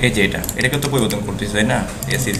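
A man talking; his words are not made out.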